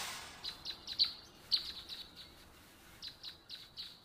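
A bird chirping in short, quick notes that each drop in pitch, in two runs of several chirps with a gap between them, as a fading swell from the intro dies away in the first half second.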